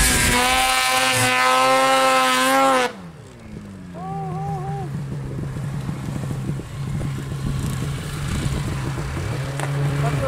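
Snowmobile engine revving hard with a high, steady whine for about three seconds. The throttle then drops off suddenly, and the engine sinks to a low, steady running note.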